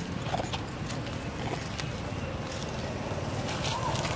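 Outdoor ambience: a steady low rumble with scattered light ticks and rustles, and two brief faint squeaks, one about half a second in and one near the end.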